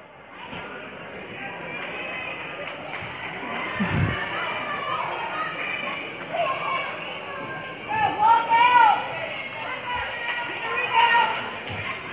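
Gymnasium crowd murmur and scattered distant voices during a stoppage in a basketball game, with a basketball bouncing on the court floor. The strongest bounce comes about four seconds in.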